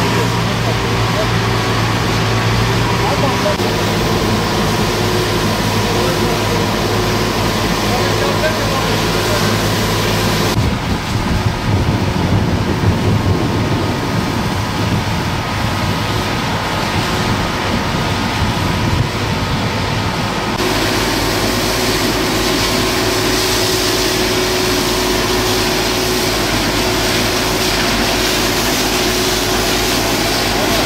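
A water tanker truck's engine running steadily while water sprays from a hose onto pavement. The sound changes abruptly about ten and twenty seconds in.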